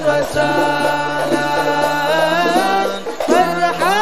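Sholawat, Islamic devotional singing in praise of the Prophet: a voice holds long, ornamented, wavering notes over a steady low held tone. There is a short break about three seconds in, then a new phrase begins on a rising note.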